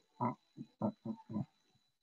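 A person's voice making a quick run of about five short, wordless vocal sounds in the first second and a half, then quiet.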